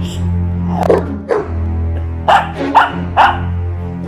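A small dog barking in about five short, sharp yaps during rough play, over background music with a steady low bass note.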